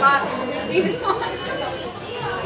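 Indistinct chatter of several voices in a fast-food restaurant.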